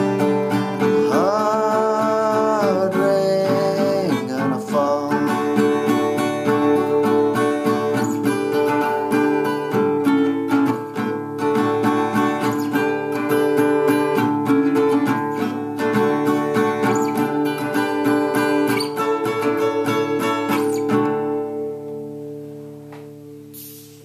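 Vintage Oscar Schmidt Stella acoustic guitar in drop D tuning strumming the closing chords of a folk song, after the last sung note is held and trails off in the first few seconds. Near the end the strumming stops and a final chord rings out and fades.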